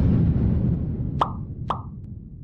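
Outro animation sound effects: a low whooshing rush fading away, then two short cartoon pops about half a second apart as the animated icons pop onto the screen.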